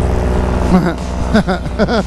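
Paramotor engine running steadily in flight, with a man laughing over it in the second half.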